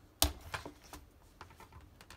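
Metal snap fastener on a leather strap popping open with one sharp click, followed by a few faint clicks and soft rustling of the leather being handled.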